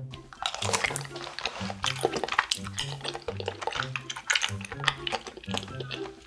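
Close-up wet chewing and sticky mouth sounds of eating chewy rice cakes in a thick cheese sauce, many small irregular clicks, over background music with a repeating bass line.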